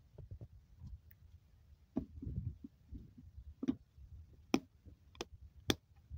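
Quiet, irregular soft low thumps with about five sharp clicks spread through the second half.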